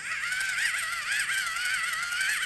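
Small battery-powered light-up spinning toy playing a high, warbling electronic tune that starts suddenly when it is switched on.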